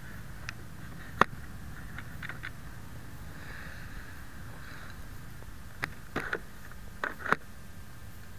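Handling noise on a foam RC model plane: a sharp click about a second in as the canopy hatch is pressed into place, then a few scattered clicks and knocks near the end, over a steady low hum.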